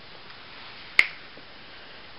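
A single sharp click about a second in, over faint steady hiss.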